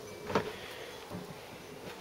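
A single light knock about a third of a second in, then faint room tone.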